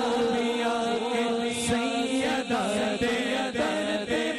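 A man singing an unaccompanied devotional naat into a microphone, drawing out long ornamented notes over a steady low held note.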